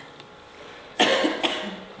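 A person coughing: one sharp cough about a second in, a shorter second one just after.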